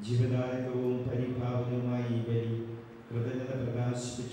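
A man chanting a prayer on a near-steady reciting pitch, with a brief pause about three seconds in.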